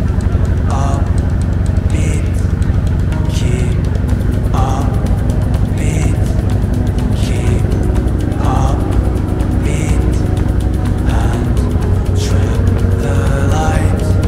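A bumboat's engine running steadily under way, a deep continuous rumble, with background music over it carrying a regular beat about every second and a half.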